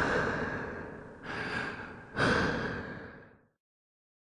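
A person's heavy, laboured breaths, three in a row, each swelling and fading, the last dying away, dramatising the inhalation of toxic smoke.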